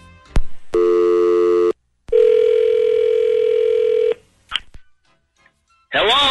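Telephone line sounds of a call being placed. A click is followed by about a second of steady dialing tones, then a single two-second ringback tone and a brief click as the line picks up.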